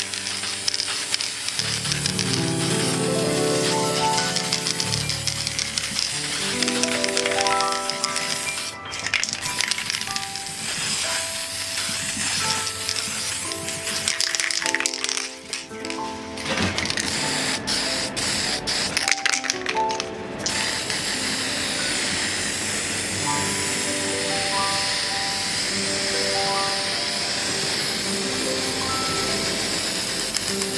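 Background music with a melody, over a steady hiss of an aerosol can of gold spray paint being sprayed; the hiss drops out briefly a few times.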